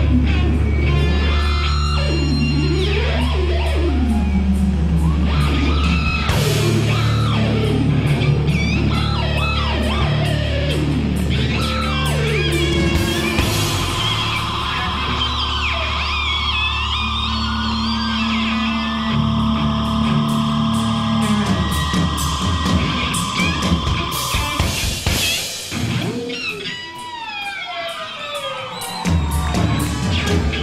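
Live rock band with distorted electric guitars: long held feedback tones and swooping, sliding pitches over a steady low drone. The sound thins out briefly near the end, then comes back in full.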